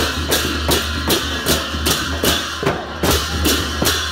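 Newar dhimay drums and cymbals played together in a fast, even procession rhythm. A cymbal stroke lands about two and a half times a second over the deep drum beats.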